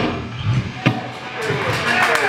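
Live punk rock band's song ending: the last chord rings out and fades after the band stops, with a sharp knock a little under a second in. Shouts and cheers from the bar crowd come up near the end.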